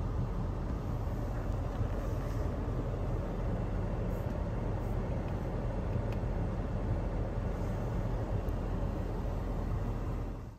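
Steady low cabin noise inside a 2020 Lexus RX 350 with the ignition on: the climate fan blowing while the SUV sits running.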